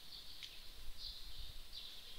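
Faint background noise: a high-pitched hiss that comes and goes in short patches, over a low rumble.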